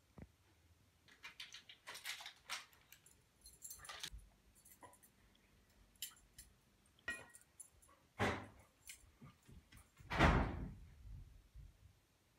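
A dog's collar tags jingling in short scattered bursts as it moves about the room, with two heavier thumps near the end, the second the loudest.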